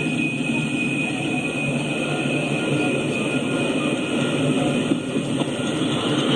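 Freight train cars, covered hoppers and tank cars, rolling past on the rails: a steady noise of steel wheels running over the track.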